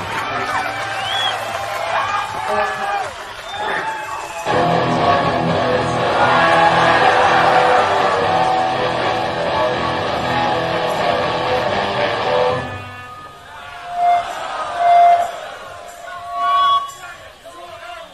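Live rock band's electric guitars at a song's end: crowd whooping over fading held notes, then a loud distorted guitar chord strummed and held for about eight seconds that cuts off abruptly. A few separate single guitar notes are picked near the end.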